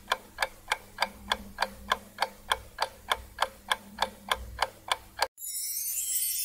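Countdown-timer sound effect: a clock-like tick about three times a second over a faint low hum, which stops abruptly near the end and gives way to a high, hissy shimmer.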